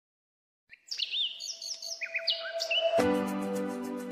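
Silence, then birds chirping in short rising and falling calls from about a second in. About three seconds in, background music with sustained chords and a light ticking beat comes in under the chirps.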